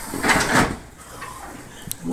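A brief scraping rustle of things being handled on a board, about half a second in, then quieter, with a small click near the end.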